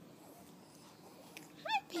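Mostly faint room sound, then near the end a woman's high, rising sing-song voice begins a baby-talk 'hi'.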